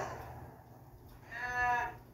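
A moo can toy giving one short moo about a second and a half in, after a louder sound dies away at the start.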